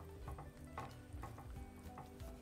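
Faint stirring of potato and carrot chunks in liquid in a pot with a silicone spatula, with a few soft knocks and sloshes.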